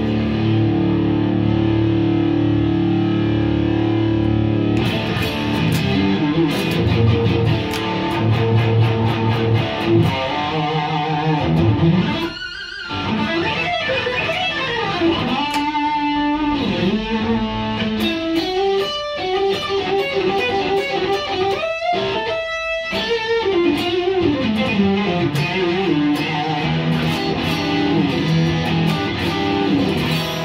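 Overdriven electric guitar played through a home-built 1-watt tube amp with an ECC81 power tube and a Dirty Shirley-style preamp, run with the gain near full and boosted by a compressor pedal. Held chords ring for the first few seconds, then come picked lead lines with bends, broken by two short pauses.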